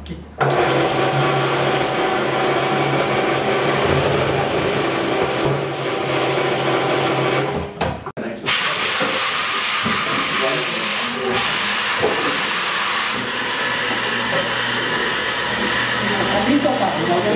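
Electric motor of a drill-press-style jug-washing machine running steadily, spinning a brush inside a large plastic water jug. After a brief break about eight seconds in, the sound goes on rougher and noisier.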